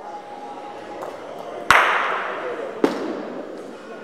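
Bocce balls knocking hard: one loud sharp crack with a long echo through the hall, then a second, shorter knock about a second later.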